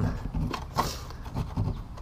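Kayak seat strap and its metal buckle being worked loose against the metal seat track: a few short clicks and knocks with some rustle of the webbing, the loudest a little under a second in.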